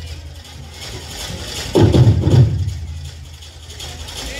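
Live Polynesian drumming for a dance performance. After a quieter start, a loud run of rhythmic drum strokes begins about two seconds in and fades before the end.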